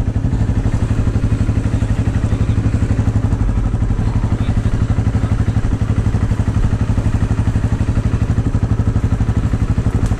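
Dirt bike engine idling close by, a steady, even beat that does not rise or fall.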